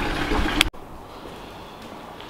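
Steady outdoor background noise, cut off abruptly less than a second in, then quiet indoor room tone.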